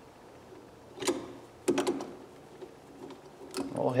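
A few light metallic clicks and scrapes of a screwdriver tip seating in the screw of a wall outlet cover plate: one about a second in, a quick cluster shortly after, and another near the end.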